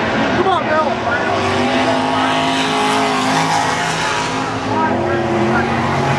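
Dirt Modified race cars' V8 engines running hard as a pack races around the track, the engine pitch sweeping down and back up in the first second, then holding steadier.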